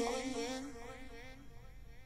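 The tail of a sung vocal phrase fading away between lines, its echo and reverb dying out over about two seconds, with the vocal run through the Motion Harmonic distortion-and-filter plugin.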